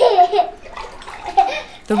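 Water being scooped from a bucket and poured over a child standing in a plastic basin during a bath, splashing. A short high voice sounds at the start and again briefly later.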